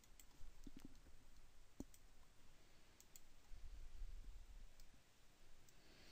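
Several faint, scattered computer mouse clicks against near silence.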